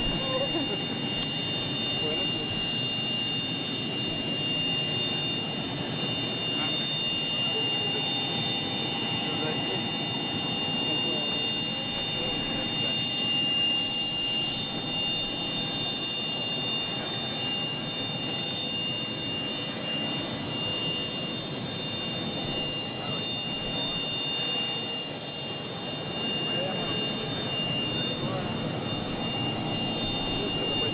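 A parked jet airliner's turbines running with a steady high whine over a low rumble, with indistinct voices of people talking nearby.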